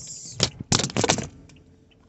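A phone propped on a car dashboard toppling over on a turn: a scraping rustle, then a quick cluster of knocks and clatters from about half a second to just past a second in as it falls back against the dash, followed by the car's quiet cabin noise.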